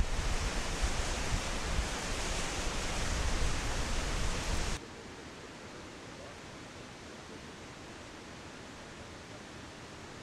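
Loud steady rushing outdoor noise with a heavy low rumble, cutting off suddenly about five seconds in to a much quieter steady hiss.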